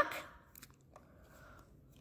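Faint handling sounds of a plastic Instax Mini 9 instant camera being turned over in the hands: a couple of light ticks and a soft rub, right after the last word of speech.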